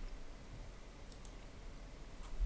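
A couple of faint computer mouse clicks, about a second in, over a low steady hiss.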